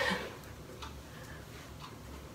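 A clock ticking: a few faint, sharp ticks.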